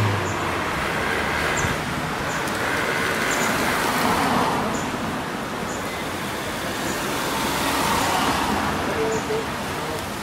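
Road traffic noise: a steady wash of passing vehicles, swelling a little about four seconds in and again near eight seconds.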